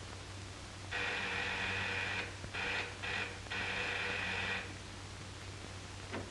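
Electric door buzzer pressed in an uneven pattern: a long buzz about a second in, two short ones, then another long one, each starting and stopping abruptly. A steady low hum runs underneath.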